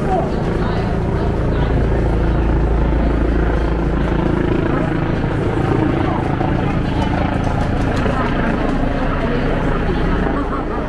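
Street ambience of passers-by talking, over a low, steady droning rumble that is strongest in the first half.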